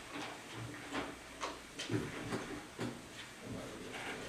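Scattered light rustles and small knocks, irregular and a fraction of a second apart, typical of papers and pens being handled at a table over low room background noise.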